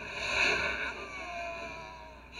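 A breathy whoosh that swells to a peak about half a second in and then fades, with a faint wavering tone under its tail: an editing transition sound effect.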